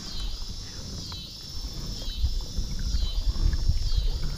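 A chorus of insects buzzing high, swelling and fading about once a second, over a low rumble on the microphone that grows louder in the second half.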